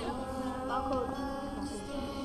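A group of girls and young women singing together in unison, holding a long, steady note at the close of the song.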